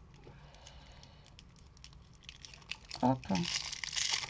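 Faint rustling of hands handling a ribbon, then near the end a louder crinkling rustle as the ribbon is pulled off its plastic spool.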